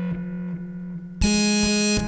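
Electronic music: held synthesizer chords over short low drum hits, with a louder, brighter synth chord coming in just over a second in.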